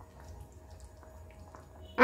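Faint wet stirring of a silicone spatula moving chopped tomatoes through watery sabudana khichdi simmering on low flame, with a few faint ticks over a steady low hum.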